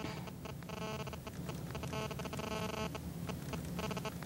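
Buzzy, stuttering electronic audio from a recorded dialogue being scrubbed through on a computer while it is cued up. The sound cuts in and out several times.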